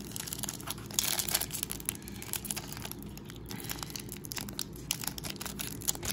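Foil wrapper of a 2001 Upper Deck golf card pack crinkling as hands squeeze and handle it, with many irregular sharp crackles.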